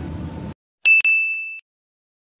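A single bright, bell-like 'ding' from a video-editing transition sound effect. It starts suddenly just under a second in, rings for about two-thirds of a second and then cuts off abruptly.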